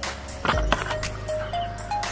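Background music: a simple melody of short notes over a steady held tone, with scattered clicks and rustles on top.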